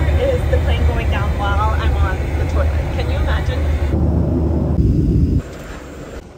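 Steady low drone of a jet airliner's cabin, heard from inside the lavatory, with a woman talking over it. About four seconds in there is a spell of heavier rushing noise, and then the drone cuts off abruptly.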